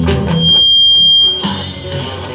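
Live rock band playing, then breaking off about half a second in while a single high-pitched feedback squeal rings steadily for about a second, the loudest sound here; the band crashes back in with electric guitar near the end.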